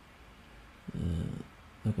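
Speech only: a man's drawn-out hesitation "uh" about a second in, then he starts speaking again near the end.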